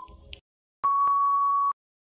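Quiz countdown-timer sound effect: a last short tick, then a steady electronic beep lasting about a second that signals time is up.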